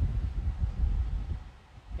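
Low, uneven rumble of wind noise on the microphone, fading out about a second and a half in.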